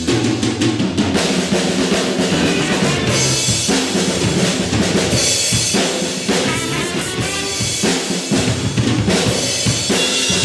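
Live band playing an upbeat groove, with the drum kit most prominent: kick, snare and cymbals steady throughout. Electric guitars, trumpets, clarinet and violins play along.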